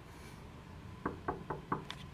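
Knuckles knocking on a wooden room door: a quick run of raps starting about a second in, about four a second.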